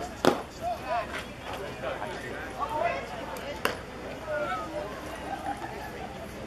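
A sharp smack at home plate a moment after the pitch is thrown, the loudest sound here, then a second, sharper click a few seconds later, over spectators' chatter.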